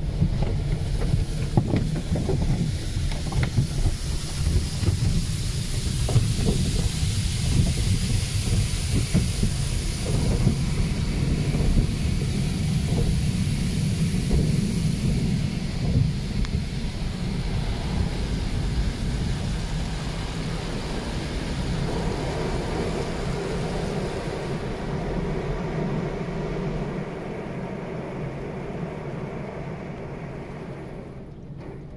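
Automatic car wash heard from inside the car: cloth wash strips slap and scrub against the windshield and body amid hissing water spray, with many dull knocks in the first half. This gives way to a steadier rush of rinse water on the glass that slowly gets quieter near the end.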